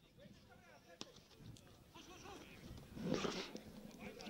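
Faint shouts of players on an outdoor football pitch, with one sharp ball kick about a second in. A louder shout about three seconds in comes as a player goes down in a challenge.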